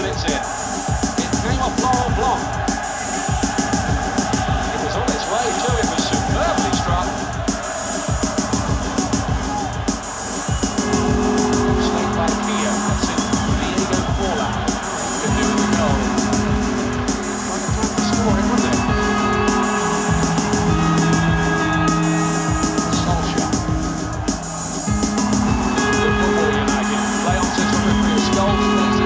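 Live electronic music with electric guitar: a fast, steady electronic beat, joined about ten seconds in by long held notes layered over it.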